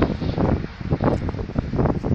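Wind buffeting the microphone, an uneven, gusty low rumble.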